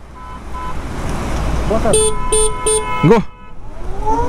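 A vehicle horn tooted three short times in quick succession about halfway through, over a steady low rumble.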